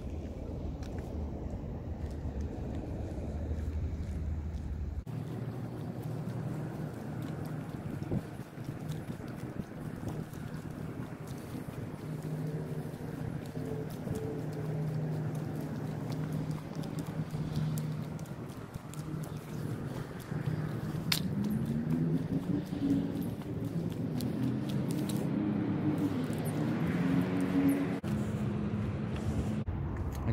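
Wind buffeting a furry windscreen microphone for the first few seconds, then a vehicle engine running close by, steady for a while and then rising and falling in pitch in the second half.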